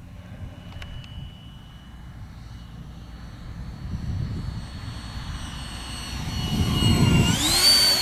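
Electric ducted fan of a 70mm Super Scorpion RC jet whining as the jet makes a low pass. The sound grows steadily louder as it closes in, and near the end the whine glides up in pitch and then holds.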